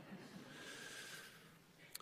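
Near silence, with a faint breath drawn in at the lectern microphone for about a second.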